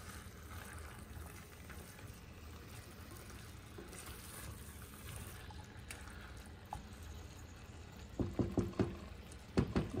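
A spatula stirring a thick frying curry in an enamelled cast-iron pot: soft scraping and occasional light knocks against the pot over a low, steady background noise. A woman's voice comes in near the end.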